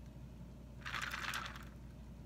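Brief crackly rustle of handling noise, lasting under a second, as a hand moves a paper take-out drink cup, over a faint steady low hum.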